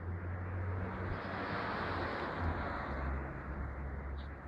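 Light propeller aircraft flying over, its engine and propeller noise with a low hum, growing to its loudest about halfway through and then easing off.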